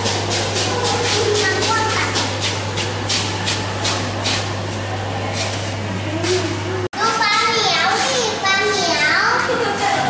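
Crowd of children chattering and calling out, with a steady low hum beneath. About seven seconds in the sound breaks off sharply, and then children's voices rise and fall in pitch, close to sing-song calling.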